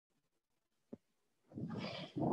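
Near silence with one faint click about a second in, then a soft rustling noise from about halfway through as a person shifts on a yoga mat.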